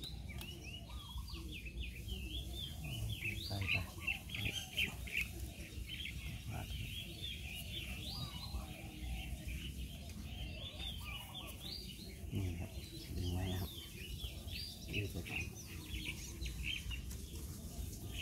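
Small birds chirping continuously, many quick high chirps overlapping, with a few lower calls now and then.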